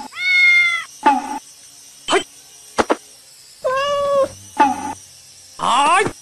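Kitten meowing three times: a level call at the start, another about four seconds in, and a rising one near the end. A few sharp clicks come in between.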